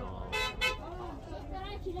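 Two short vehicle horn toots about half a second in, with faint voices behind.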